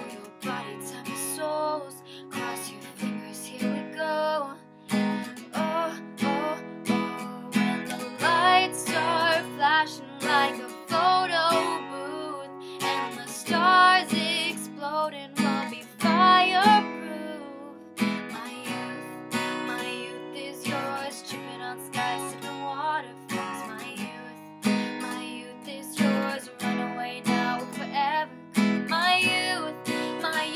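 Acoustic guitar strummed in a steady rhythm, chords ringing, under a young woman's voice singing a wavering melodic line.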